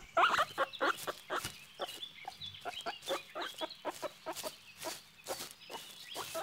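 Guinea pig making a quick run of short squeaking calls, about four a second.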